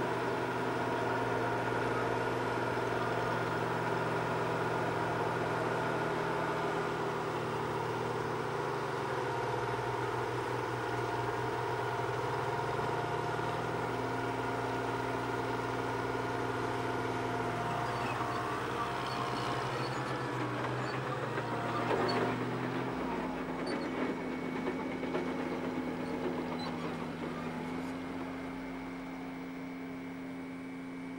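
Heavy diesel earth-moving machinery, a tracked excavator and a bulldozer, running steadily, the engine note dropping and rising in steps as the machines take load. A few short knocks and clatters come in the second half.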